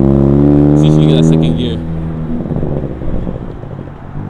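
A Ford Focus ST's turbocharged four-cylinder engine pulling away in first gear under a learner driver. Its note rises slightly, then drops off and fades about halfway through as the car drives away.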